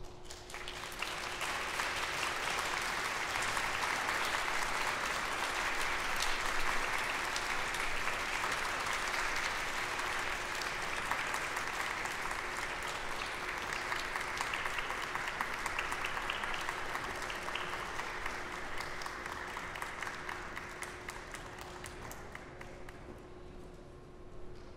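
Audience applauding: many people clapping, starting suddenly, holding steady, then thinning out over the last few seconds.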